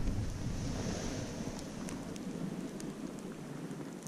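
Wind buffeting a body-worn action camera's microphone over the hiss of a snowboard sliding across packed snow; the low wind rumble thins out about two-thirds of the way through as the ride slows.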